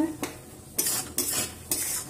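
A metal spatula stirring and scraping cooked masala Maggi noodles around a metal kadhai, with two scraping strokes about a second in and near the end, and the noodles sizzling in the hot pan.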